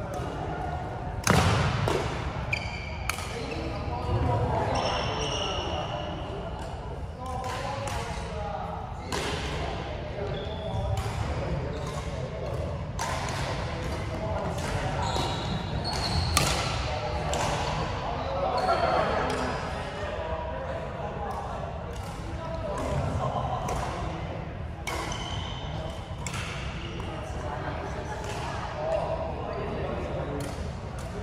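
Badminton rally: sharp racket strikes on the shuttlecock at irregular intervals, with brief high squeaks of shoes on the court floor, echoing in a large sports hall. Voices can be heard in the background.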